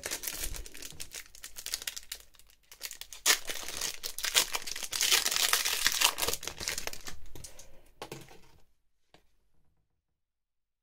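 Foil booster-pack wrapper crinkling and tearing as it is ripped open by hand, with a busy crackle that is strongest in the middle and stops about nine seconds in.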